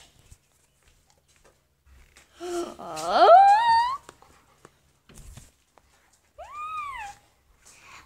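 A dog whining: one long, loud call rising steeply in pitch, then a second, shorter call that rises and falls.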